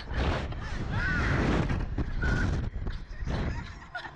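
Wind buffeting the onboard microphone of a swinging reverse-bungee ride capsule, with short shrieks and laughs from the two riders about a second in and again near two and three seconds.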